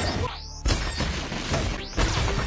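Film sound effects of a weapon blast striking: a short zip, then a sudden crash of shattering glass and flying debris about two-thirds of a second in, with another blast starting near the end, over the film's score.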